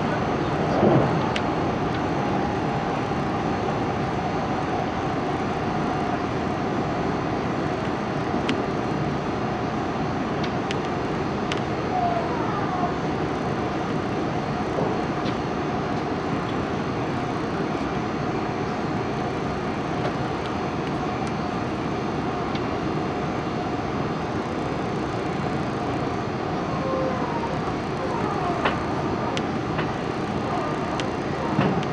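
Steady running noise of a JR 373 series electric train heard from inside the car at speed: an even rumble of wheels on rail with a faint steady tone above it.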